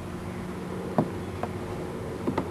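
A steady low hum, with two faint clicks about a second in.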